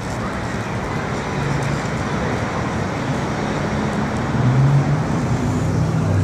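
Street traffic noise, with the low hum of a motor vehicle's engine that grows a little louder in the second half.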